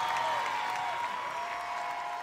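Concert audience applauding at the end of a live song while a long note is still held.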